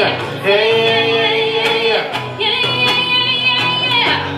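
Live pop duet: a female and a male voice singing together into microphones, over guitar, in two long held phrases with a short break about halfway through.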